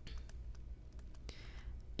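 Faint clicks and light scratching of a stylus writing on a tablet, over a steady low hum.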